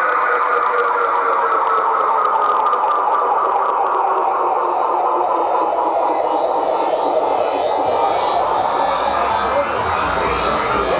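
DJ-mixed electronic dance music in a breakdown: a siren-like synth tone glides slowly downward in pitch, and deep bass comes back in near the end.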